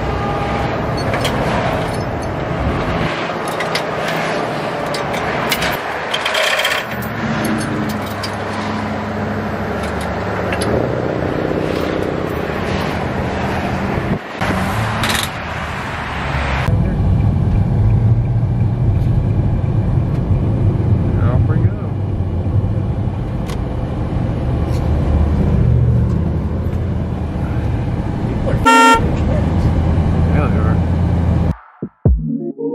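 Roadside highway traffic noise with scattered clicks and knocks. About halfway through, this gives way to the steady low drone of a car driving at highway speed, and near the end a vehicle horn gives one short toot.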